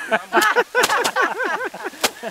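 People laughing heartily, with two sharp knocks about a second apart as bundles of rice stalks are struck against a wooden bench to thresh out the grain.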